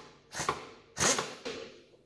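Bridgeport Series 1 mill's pneumatic power drawbar jogged with three quick taps of its 'in' button: three short bursts of the air drive, each starting sharply and fading. These are the taps that start the drawbar's thread into the tool holder without cross-threading it.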